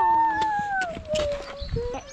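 A domestic cat giving one long, drawn-out meow that slides down in pitch, followed by a short lower call near the end.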